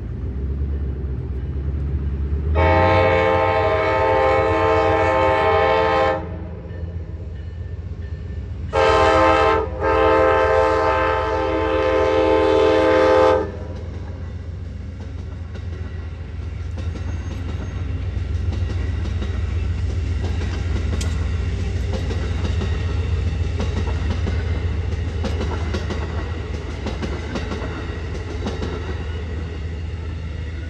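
Amtrak P42DC locomotive's Nathan K5LA air horn (narrow-font version) sounding a long blast, then a short and a long blast, in the pattern of a grade-crossing signal. The train then passes, with a steady rumble and the clatter of wheels on the rails.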